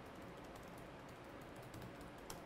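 Fast, faint typing on a laptop keyboard: a quick run of light key clicks.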